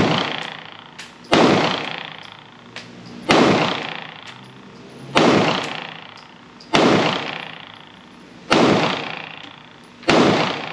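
Smith & Wesson M&P Shield Plus pistol in .30 Super Carry firing five slow, evenly paced shots about two seconds apart, each trailing off in a long echo in an indoor range.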